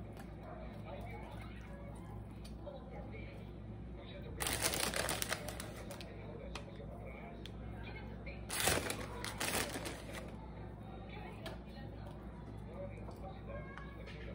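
A plastic bag of shredded lettuce rustles and crinkles in two bursts, about four seconds in and again near nine seconds, while lettuce is taken out. Light clicks of hands working food on a plate come between them, over a low steady hum.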